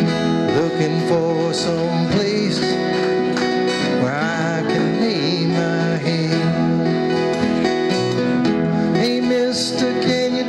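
Live acoustic band playing a folk-rock song: strummed acoustic guitars with other plucked strings, over a cajon and upright bass, at a steady level.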